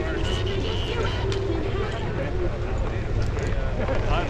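Indistinct chatter of several people standing together, over a steady low rumble.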